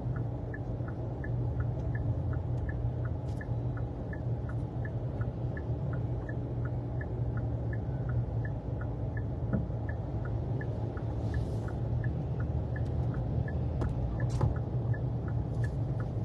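Inside a car cabin: the steady low rumble of the engine and road, with a turn-signal indicator ticking evenly in an alternating tick-tock, a few ticks a second. A few faint clicks come in now and then.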